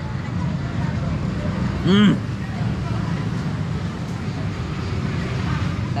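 Steady low rumble of street traffic, with a man's single 'mmm' of enjoyment about two seconds in as he eats a mouthful of the sweet grilled banana.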